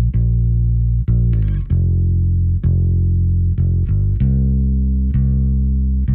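Fender Precision bass played fingerstyle through a SansAmp, heard solo: a slow bass line of sustained notes, each freshly plucked every half second to a second. The tone is scooped out and Ampeg-like, with a little click on top and a tiny bit of drive for tube warmth.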